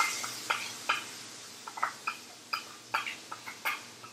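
Yogurt-and-spice korma base frying in hot oil in a stainless steel pan: a sizzle that dies down, broken by irregular sharp pops and crackles as the wet sauce spits in the oil.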